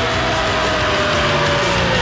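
Symphonic black metal: a dense wall of distorted guitars and drums under a long held note that sinks slightly in pitch near the end.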